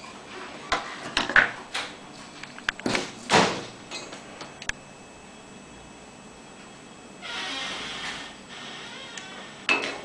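Knocks and clicks of a circuit board being turned over and set down on a workbench, the loudest about three seconds in. About seven seconds in comes a hiss lasting roughly a second.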